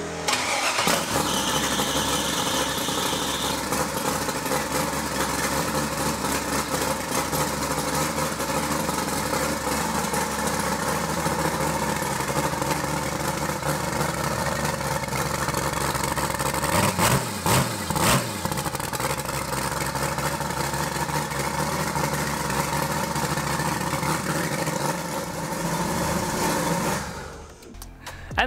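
The eight-turbo LS-swapped V8 Mustang starting up about half a second in and idling unmuffled through eight short upright open turbo pipes. Two brief revs come about two-thirds of the way through, and the engine is shut off near the end.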